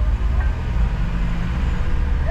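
Steady low rumble of a car driving slowly in city traffic: engine and road noise.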